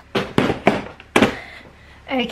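A few hollow plastic knocks and thunks as a large plastic toolbox is set down and handled on a kitchen counter, about five in the first second and a half.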